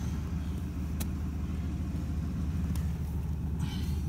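1985 Oldsmobile Delta 88's engine idling steadily on its first run after months parked, with a single sharp click about a second in.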